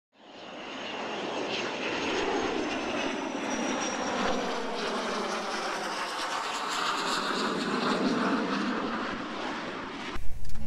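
A steady rushing roar that fades in over the first second and holds evenly, with a faint high whistle above it for a couple of seconds.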